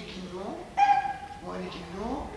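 A person's voice in a high, drawn-out cry, held for about half a second, coming about a second in between shorter vocal sounds.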